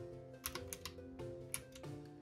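A run of clicky key presses on a desktop calculator with round, typewriter-style keys, over soft background music.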